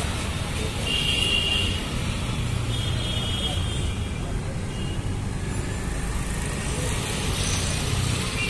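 Steady street traffic noise, a continuous low rumble of passing vehicles, with brief high-pitched tones three times in the first half.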